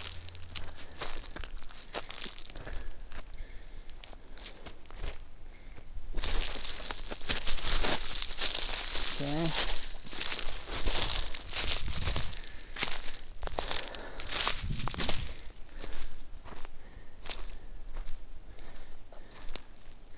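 Footsteps crunching on dry leaf and pine-needle litter, with brush rustling against clothing, as someone walks down a slope; the crunching grows denser and louder about six seconds in and eases off again a few seconds before the end.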